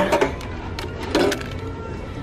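Plastic-packaged items being handled in a wire shelf basket: a few light clicks and rustles over a steady low hum.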